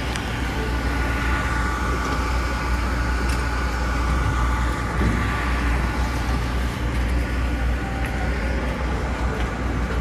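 Engines of a docked passenger ferry running steadily: a deep, even rumble with a faint steady whine on top.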